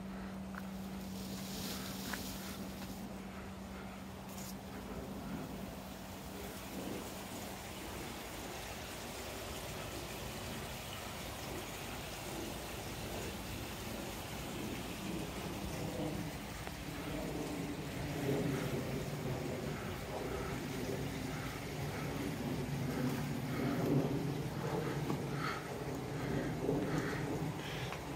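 Steady rush and splash of moving water in a garden koi pond, with a low steady hum in the first few seconds. From about halfway a louder droning hum with several tones joins in.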